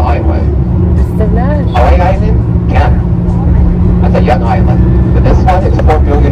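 Steady low drone of a tour bus engine heard from inside the cabin while driving, with indistinct voices over it.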